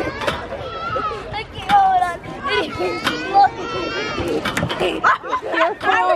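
Several children's excited voices overlapping, with high rising and falling squeals and laughter, as children play on a playground swing.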